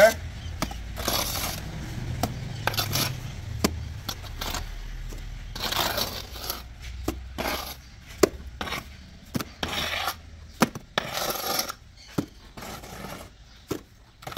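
Steel mason's trowel scraping wet mortar off a brick wall and clicking against it and the screed, taking off the excess: a run of short scrapes and sharp clicks at irregular intervals.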